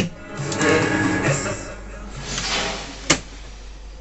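Music from the boombox's speakers, fed from a portable cassette player through a newly added AUX input. A single sharp click of a cassette-deck key comes about three seconds in.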